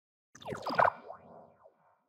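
Short cartoon-style logo sound effect with gliding, bending pitches, starting about a third of a second in and fading away within the next second or so.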